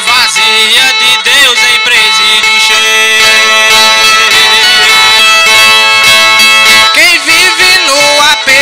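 Repente cantoria: a cantador singing improvised verse in a drawn-out style, his voice bending and wavering in pitch, with a long held note through the middle.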